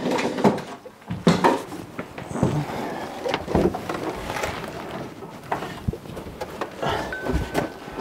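Scattered irregular knocks and thumps of a person moving about on bare wooden floorboards. A faint steady high tone sounds for about a second near the end.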